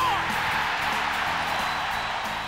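Hockey arena crowd cheering a goal, starting suddenly and fading slowly, over background music with steady low notes.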